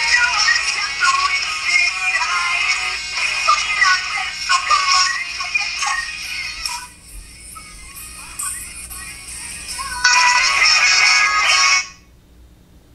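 Music with singing, loud at first, dropping away for a few seconds in the middle, returning, then cutting off suddenly at the end.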